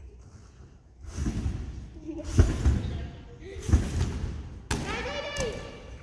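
A gymnast's double front salto off a trampoline: heavy thuds of the take-off about two and a half seconds in, then a single landing thud on the thick padded mat about a second later, the landing not held. A short voice exclamation follows near the end.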